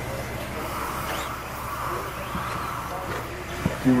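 Electric RC buggies racing on a dirt track: a steady whir of motors and drivetrains with tyres on dirt, swelling slightly in the middle as cars pass.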